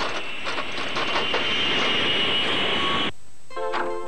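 Dense rattling, hissing mechanical noise with a steady high whine through it, cutting off suddenly about three seconds in. Music starts just before the end.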